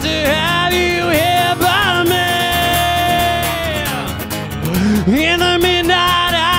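A singer with a strummed acoustic guitar performing live. The voice bends through a phrase, holds one long note for about two seconds and lets it fade, then slides up into the next line near the end.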